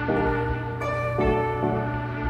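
Music: a slow tune of held notes, changing about every half second, over a steady low hum.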